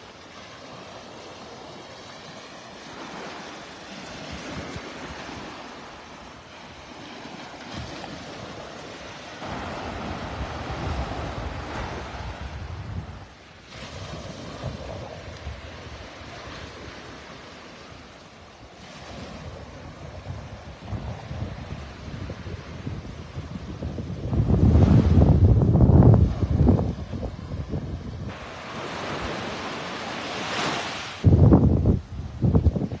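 Small surf breaking and washing up on a sandy shore, with wind rumbling on the microphone. The wind rumble is heaviest for a few seconds near the end.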